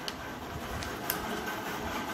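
A paperback textbook's page being turned over and the book handled, a steady paper rustle.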